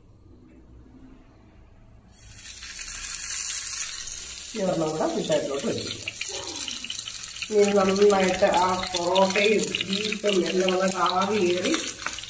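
Banana-leaf-wrapped kizhi parcels sizzling on a hot greased tawa, a steady hiss that starts about two seconds in.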